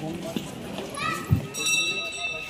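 Crowd chatter, then a knock and a bell that starts ringing about a second and a half in and keeps on: the meal bell calling visitors to eat.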